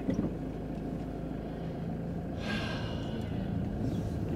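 Car cabin noise while driving slowly: a steady low engine and tyre hum. About two and a half seconds in, a brief higher-pitched sound joins for under a second.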